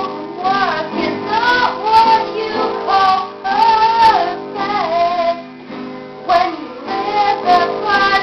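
A young girl's voice singing a song over two strummed acoustic guitars, one of them a twelve-string. The voice pauses briefly about three quarters of the way through, then takes up the next line.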